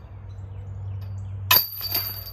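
A disc golf putter strikes the chains and metal basket of a disc golf target about a second and a half in. There is one sharp metallic clank of the chains, and a high ringing lingers after it as the putt drops into the basket.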